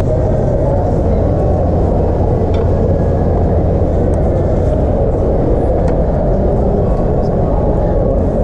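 A steady, muffled low rumble with an indistinct murmur of voices mixed in.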